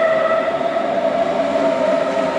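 Red Deutsche Bahn S-Bahn electric train passing close by, with a steady high whine over the noise of its wheels on the rails.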